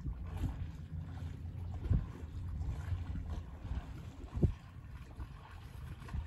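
Wind buffeting the microphone: a low rumble that swells briefly about two seconds in and again about four and a half seconds in.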